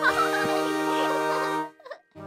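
High, fluttering cartoon baby giggling over a held background music chord; both stop abruptly near the end.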